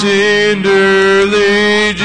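Slow gospel hymn music: a few long held notes of sung melody with soft accompaniment.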